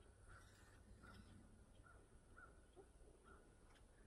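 Near silence: faint outdoor background with short, faint high chirps recurring about every half second to a second.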